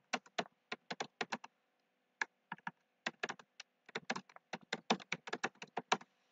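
Computer keyboard keys being typed, quick clicks in irregular runs with short pauses between words, the densest run in the second half.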